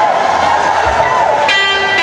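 A man's held, wavering sung note tails off. About a second and a half in, an electric guitar chord is struck and rings out steadily, just before a rock band comes in.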